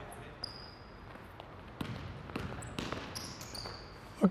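A basketball bouncing a few scattered times on a hardwood gym floor, faint, with short high-pitched sneaker squeaks from players cutting on the court.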